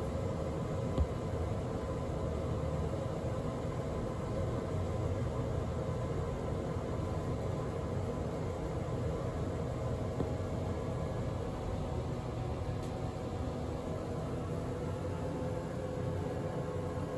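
Mowrey hydraulic elevator cab descending, a steady rumble of the car in travel with a faint steady hum, and a small click about a second in.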